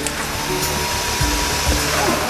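A home-made motorised hair-washing helmet switched on and running with a steady whooshing whir, like a hair dryer. A thin steady whine joins about half a second in.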